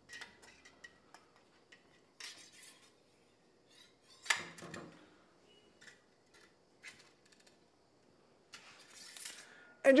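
Metal cleaning rod sliding through a rifle bore behind a dry patch, with light scrapes and small metallic clicks of the rod against the action. A sharp click about four seconds in is the loudest sound.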